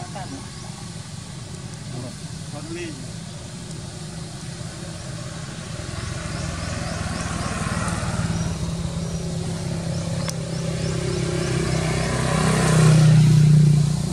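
A motor vehicle on the road with a steady low engine hum, growing louder through the second half as it approaches. It is loudest shortly before the end, then falls off sharply.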